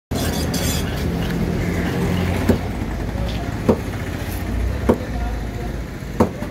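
Steady low background rumble with faint distant voices, broken by three sharp knocks evenly spaced a little over a second apart in the middle of the stretch.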